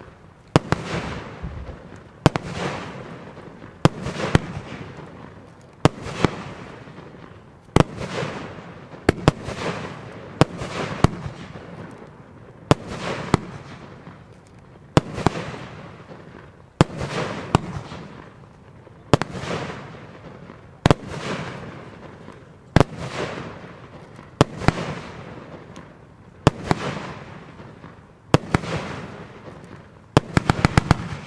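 Consumer aerial firework 'Angel Dust' by Evolution Fireworks firing shot after shot, about one every two seconds. Each shot is a sharp bang followed by a fading hiss of glittering stars.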